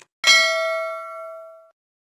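Notification-bell "ding" sound effect from a subscribe-button animation: one bell strike about a quarter second in, ringing with several clear tones and fading away over about a second and a half.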